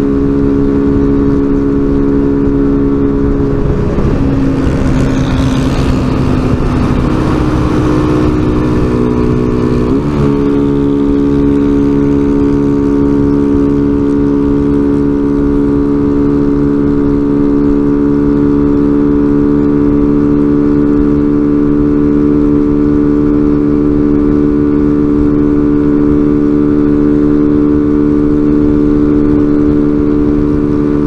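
A small motorcycle's engine running steadily at highway cruising speed, as heard from the rider's helmet. Around four to ten seconds in, the engine note wavers under a short rush of noise. Then it glides up and holds at slightly higher revs.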